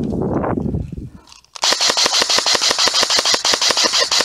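Amoeba AM-014 Honey Badger airsoft electric rifle firing a long full-auto burst, a fast, even rattle of shots starting about one and a half seconds in and lasting nearly three seconds. Before it, about a second of low rustling noise.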